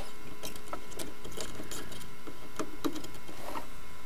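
Faint, irregular small clicks and ticks of hand tools working among the wiring of an old valve television chassis, over a steady hiss.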